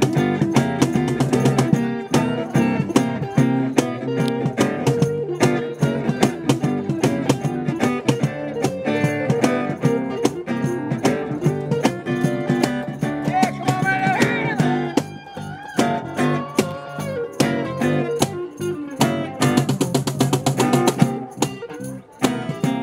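Blues band playing an instrumental break: a Stratocaster-style electric guitar plays lead lines, with bent notes about two-thirds of the way through, over acoustic guitar, acoustic bass guitar and cajón keeping a steady beat.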